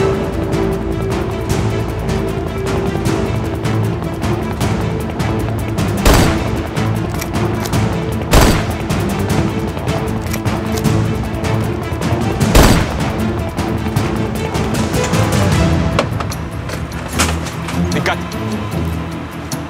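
Tense dramatic score with a rapid crackle of gunfire running under it. Three loud rifle shots stand out, spaced two to four seconds apart.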